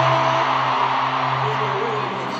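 Concert PA playing a sustained low synth drone with held chord notes, the highest of which stops about half a second in, over an arena crowd cheering and screaming that slowly dies down.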